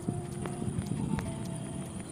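Typing on a phone's touchscreen keyboard: short, sharp key-tap clicks at an irregular pace of about two a second.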